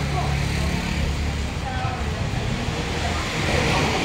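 Indistinct voices in the background over a low steady hum that fades out about a second and a half in.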